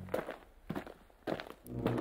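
Footsteps of a person walking at an even pace, four steps about half a second apart.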